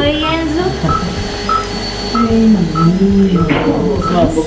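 Operating-room patient monitor beeping steadily, a short beep at one pitch somewhat under twice a second, the pulse tone of the monitored heartbeat, under low voices.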